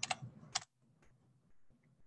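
Computer keyboard keys tapped to type in a number: two sharp key clicks in the first half second, then a few faint taps.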